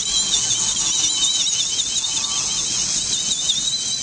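Electric nail drill (e-file) running with a small bit against a fingernail, filing the old gel during a gel fill: a steady high whine that wavers up and down in pitch.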